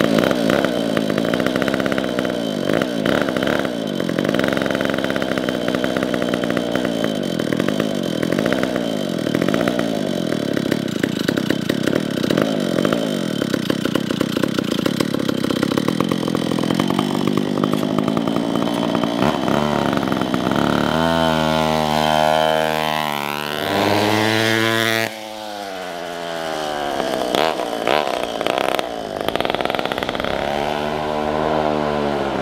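McCulloch MC92 single-cylinder two-stroke go-kart engine running, its throttle blipped so the pitch rises and falls again and again. In the second half the kart is driven off, and the engine note climbs and falls as it accelerates and eases off.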